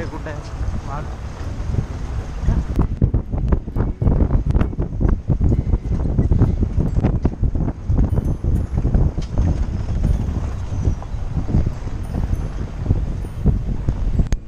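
Open-top safari jeep running over a rough dirt forest track, with wind buffeting the microphone. From about three seconds in, frequent knocks and rattles as the vehicle jolts over the bumps.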